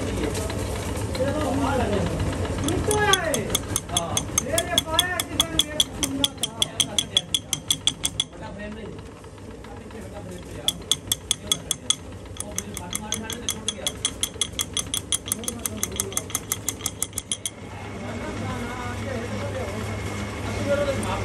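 Metal lathe work: a rapid, even metallic ticking, about six a second, in two runs of several seconds each as a hand file is held to the spinning splined shaft, over the steady hum of the lathe motor.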